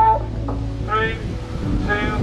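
Voices counting down aloud to a race start, calling out one number about every second.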